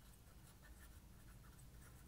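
Very faint scratching of a marker pen writing on paper.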